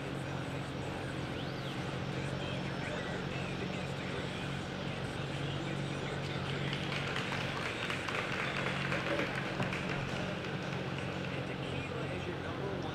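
Indoor arena ambience: a steady low hum with a faint murmur of voices in the background, a little fuller in the second half.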